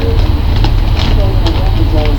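Potato chips crunching as they are chewed: a few short, crisp crackles over a loud, steady low rumble.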